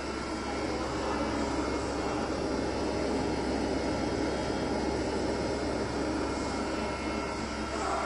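Benchtop low-speed centrifuge running, a steady whirring hum from its spinning rotor and motor that grows slightly louder in the first second and then holds level.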